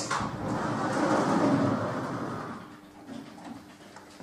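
A door being opened: a sharp latch click, then a rushing, rubbing noise as it swings, fading out after about two and a half seconds.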